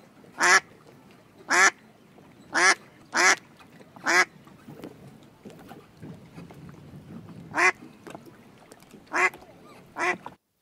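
A duck quacking in short single quacks, seven of them, irregularly spaced, with a pause of about three seconds in the middle.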